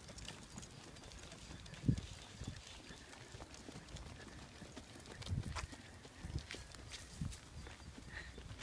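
Footsteps on a paved path: a few irregular low thuds, the loudest about two seconds in, with faint light clicks between them.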